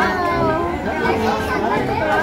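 Several children's voices talking and calling over one another.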